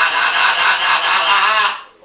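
Green-winged macaw giving one loud, harsh, drawn-out squawk of nearly two seconds that cuts off near the end, its pitch wavering just before it stops.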